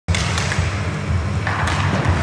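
Ice hockey sticks and puck clacking on the ice at a faceoff: a few sharp cracks, one near the start, one about half a second in and one near the end, over a steady low arena rumble.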